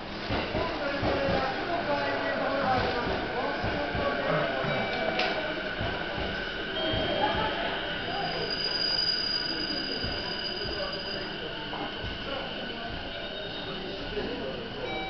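Railway station ticket-gate concourse ambience: a murmur of voices and footsteps mixed with train noise. A high steady whine is heard for a few seconds past the middle.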